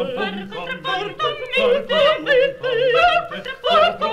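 Music: a singing voice with wide vibrato, in short phrases over a held low note.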